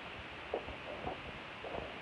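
Footsteps on dirt and gravel: a few soft thuds over a low rumble.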